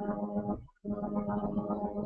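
Two long held notes at the same steady pitch, each lasting about a second, with a short break between them.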